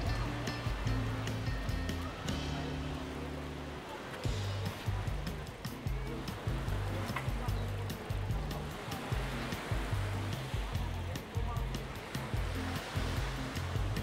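Background music with a steady beat and a moving bass line.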